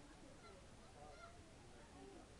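Near silence, with a couple of faint, short distant calls.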